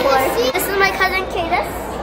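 Young children's voices: a girl vocalising and chattering in a high pitch, without clear words.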